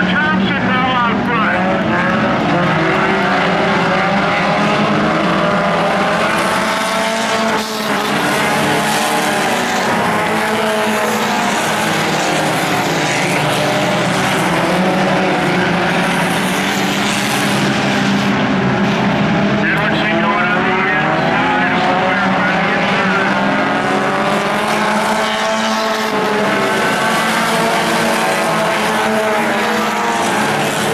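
Several IMCA Sport Compact race cars' four-cylinder engines running at once on a dirt oval, their pitches overlapping and rising and falling as they rev and ease off, over a steady low drone.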